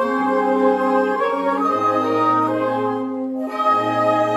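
Brass band playing a slow hymn in held chords that change every second or so, with a brief break in the upper parts a little after three seconds in.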